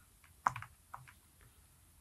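Faint typing on a computer keyboard: a few separate keystrokes.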